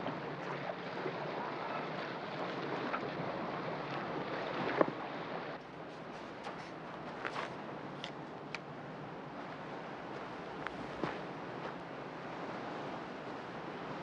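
Steady wind and water noise on a boat at sea, giving way about five seconds in to a slightly quieter, even wash of surf on a beach, with a few faint clicks.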